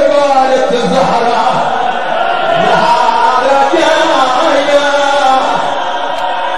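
Voices chanting a melodic devotional recitation, the sung lines unbroken.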